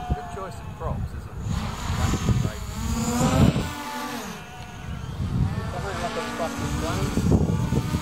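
Modified DJI Mavic quadcopter flying overhead, its motors and propellers whining, the pitch rising and falling as it revs through manoeuvres.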